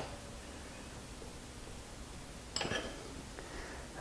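Quiet workshop room tone, broken by one short faint scrape about two and a half seconds in from the mill's drawbar being tightened with a spanner to pull the taper adaptor into the spindle.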